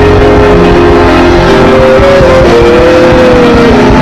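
Worship music with long held chords, over the mass noise of a congregation praying aloud all at once. In the second half a held pitched line rises and then falls.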